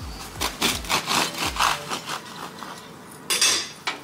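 Serrated bread knife sawing through a crusty bread roll in quick back-and-forth strokes, then a short, louder crunch of crust near the end as the roll is broken open.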